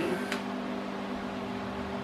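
Wahl Arco cordless pet clipper with its 5-in-1 blade set to size 40, running with a steady motor hum as it shaves hair from a dog's paw pads. A brief click sounds about a third of a second in.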